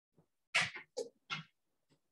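A dog making three short vocal sounds in quick succession about half a second in, the first the loudest.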